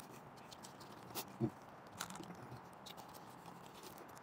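Faint sounds of a person eating a burrito: chewing with scattered small clicks and taps. There is a brief voiced sound about a second and a half in.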